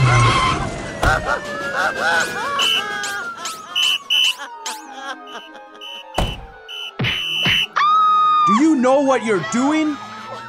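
Cartoon soundtrack: background music and cartoon sound effects, opening with a short burst of tyre skid and carrying a long tone that slides slowly down in pitch over the first five seconds. Near the end a cartoon voice babbles in arching, wordless syllables.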